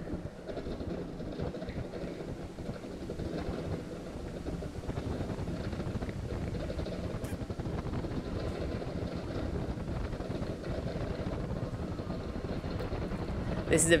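Steady road noise of a car driving on a paved road, heard from inside the cabin: an even low rumble with wind noise.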